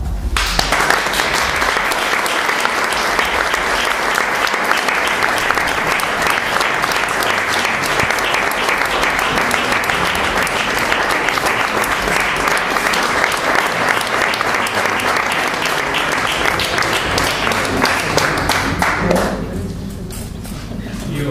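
Audience applauding: a long, steady round of clapping that stops about a second before the end.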